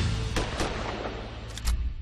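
Trailer music with gunshot sound effects over it. Two sharp shots come within the first second, then two more close together near the end, the last the loudest with a deep boom.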